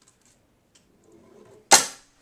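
A golf ball rolling faintly down a tube, then one sharp, loud snap near the end as it trips a mousetrap.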